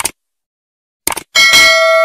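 Subscribe-animation sound effects: a short click, a quick pair of clicks about a second later, then a bright bell ding that rings on and slowly fades.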